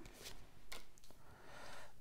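Faint rustling and light taps of tarot cards being drawn from the deck and laid down on a wooden table, with a couple of soft sliding swishes.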